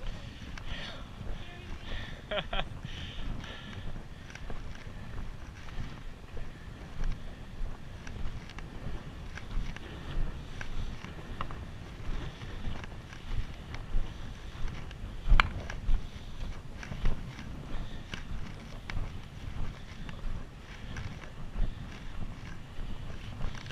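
Footsteps crunching on a gravel and rock trail at a steady walking pace, over a low rumble of wind and handling noise on a body-worn action camera. A single sharp knock about fifteen seconds in.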